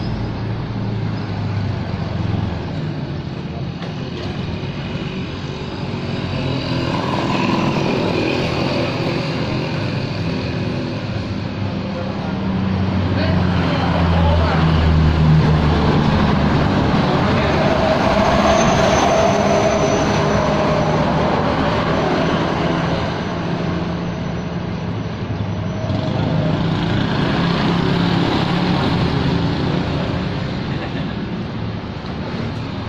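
Road traffic passing close by: vehicle engines and tyres running continuously. It grows loudest around the middle as a pickup truck drives past.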